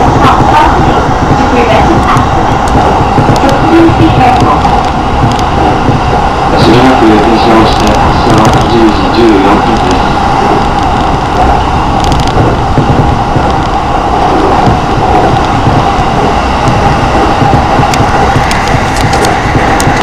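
Inside a JR Keiyo Line local electric train running between stations: a steady, loud rumble of the wheels on the track, with a constant hum over it.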